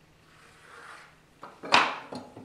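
A metal square being handled on a plywood sheet: a faint scrape, then a few short knocks as it is set down against the wood, the loudest a sharp clack about three-quarters of the way in.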